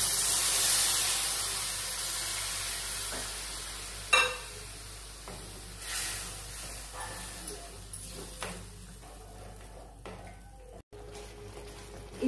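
A hot pan of frying masala sizzles loudly as liquid is poured in, the sizzle fading over several seconds. A few sharp knocks of a wooden spatula stirring against the pan come about four and six seconds in.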